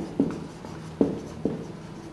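Marker pen writing on a whiteboard: a few short, separate strokes about half a second apart.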